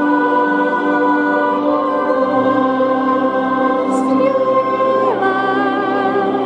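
Large mixed choir singing a slow Christmas hymn in long held chords.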